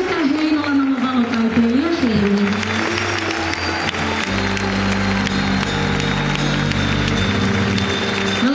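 Live band music from a concert stage, heard from within the audience: a singer's sliding sung notes at first, then a steady low keyboard or bass chord held for about three seconds from roughly halfway through, with the crowd clapping throughout.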